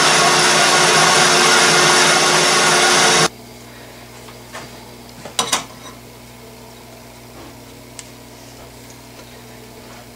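Metal lathe running under power, its carbide tool turning the outside diameter of a cast iron backing plate: a steady machine hum with cutting noise that cuts off suddenly about three seconds in. Then a quiet hum with a few light clicks as a micrometer is handled and set on the part.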